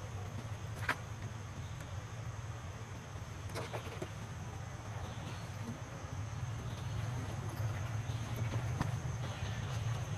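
Outdoor ambience: a steady, thin, high-pitched insect trill over a low rumble, with a few faint clicks.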